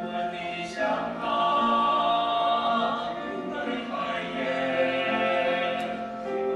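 A small group of voices singing together in harmony, holding long notes.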